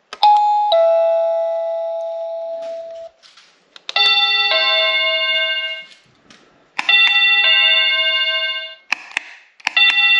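SilverCrest plug-in wireless doorbell receiver playing a two-note electronic ding-dong chime four times, each set off by a click of a button on its side. Each chime starts sharply and fades over two to three seconds.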